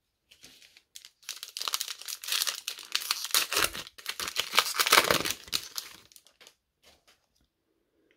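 Foil trading-card pack wrapper being torn open and crinkled by hand. The dense crackling starts about a second in, is loudest around five seconds, and dies away after about six seconds.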